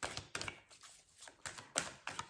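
A deck of tarot cards being shuffled by hand: a string of irregular quick card clicks and flicks, a few per second, the sharpest near the end.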